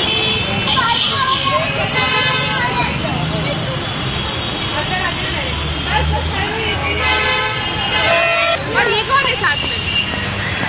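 Voices talking, with vehicle horns honking twice, each blast lasting about a second.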